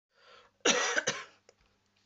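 A woman coughing twice into her fist about half a second in, after a short, faint breath.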